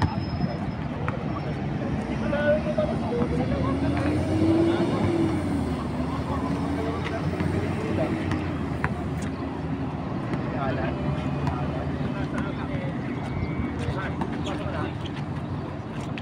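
Players' voices calling out on an outdoor basketball court over a steady rumble of road traffic, with a passing vehicle's engine note rising and falling between about three and eight seconds in.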